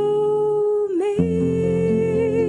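A woman's singing voice with acoustic guitar accompaniment. She holds one long note that dips and breaks off about a second in. A new note with vibrato then begins as the guitar comes in with low plucked notes.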